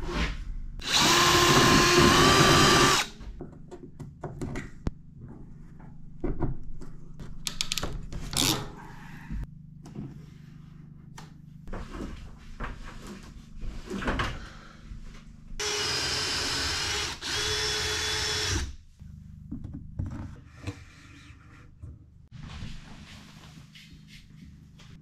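Power drill running in two steady bursts of two to three seconds each, about a second in and again past the middle, its whine stepping up slightly in pitch near the end of each burst. Light knocks and handling clatter come between the bursts.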